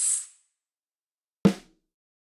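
A short, high-pitched screech-like burst, the bat-screech sample used as a reverb impulse response, lasting about half a second. About a second and a half in comes a single dry snare drum hit with a quick decay, played without reverb.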